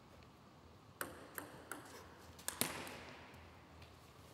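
A table tennis ball bouncing: sharp ticks, three about a second in and then a close pair, the last the loudest with a short ring after it.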